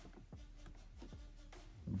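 Faint scratchy rustling and a few soft ticks of hands handling a boxed action figure's cardboard and clear plastic window packaging.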